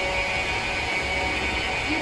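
Running cable coiling machinery: a steady mechanical hum with a constant high whine.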